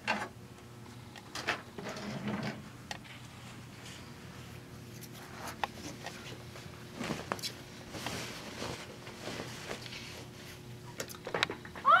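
Handling noise as a quilt is moved to a sewing machine and the camera is repositioned: scattered soft knocks, clicks and fabric rustles over a faint steady hum.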